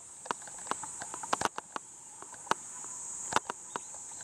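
Steady high-pitched drone of insects in summer woodland, with irregular sharp clicks of footsteps on a gravel and stone path.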